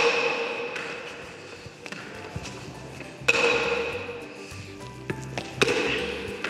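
Hard hollow-rubber pelota struck with a wooden paleta and rebounding off the walls of an indoor fronton court: sharp knocks, each ringing on briefly in the hall. Loud ones come at the start, about three seconds in and near the end, with lighter taps between.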